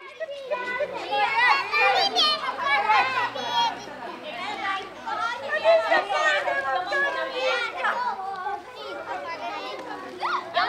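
A group of young children talking and calling out at once, many high voices overlapping in a continuous hubbub.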